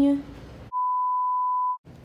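A single steady beep, one pure tone about a second long, with dead silence cut in on either side: an edited-in bleep.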